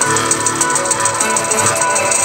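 Electronic music: layered sustained synthesizer tones under a fast, even high ticking pattern.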